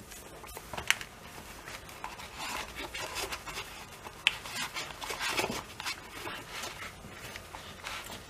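Faint handling noise of a Wera Kraftform Micro precision screwdriver being put back into its fabric pouch: gloved hands rubbing on the cloth, with a few light clicks, the clearest about a second in and again about four seconds in.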